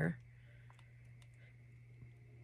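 A few faint, light clicks and taps from handling an eyeshadow palette while swatching shades, over a steady low hum.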